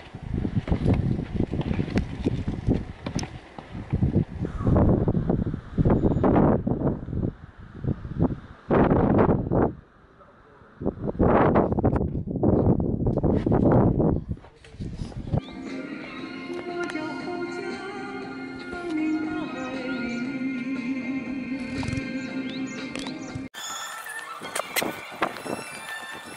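Loud, irregular gusts of wind buffeting the microphone for about the first fifteen seconds, then background music with sustained tones takes over.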